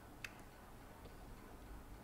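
Near silence with faint hiss, broken by one sharp click about a quarter second in and a fainter click just after: computer mouse button clicks.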